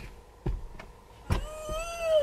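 Two dull thumps as a toddler kicks the baby mirror on the back of the car seat, then a long, high, slightly falling whine from the fretful child.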